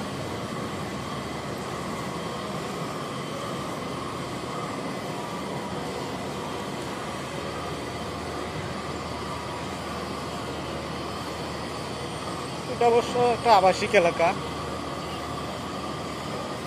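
Steady background hum of a city street, with a faint steady whine in it. A person's voice comes in briefly near the end.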